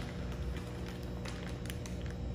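Faint crinkling and rustling of plastic fish-shipping bags being handled, a few short crinkles in the second half, over a steady low room hum.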